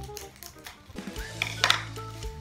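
Background music with steady low sustained notes. A couple of sharp snips about one and a half seconds in come from scissors cutting open a plastic seasoning sachet.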